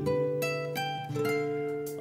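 Instrumental guitar fill in a ballad: four notes picked one after another over a held bass note, the last one ringing on to the end.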